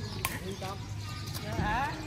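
A badminton racket strikes the shuttlecock once, a sharp crack a quarter second in, during an outdoor rally. Players' voices call out briefly over it.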